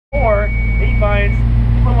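2004 Corvette Z06's LS6 V8 idling steadily while the car stands still, heard from inside the cabin.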